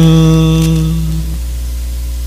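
A priest's voice chanting the end of "Mag-ampo kita" ("Let us pray"), the last syllable held on one steady note for about a second and a half before fading. After that only a steady electrical mains hum with faint hiss.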